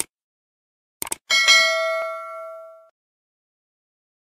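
Subscribe-button animation sound effects: a mouse click, then a quick double click about a second later, followed by a notification-bell ding that rings out and fades over about a second and a half.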